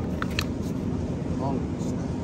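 Two light clicks of a plastic berry clamshell being handled as it is picked up, over a steady low rumble of store background noise.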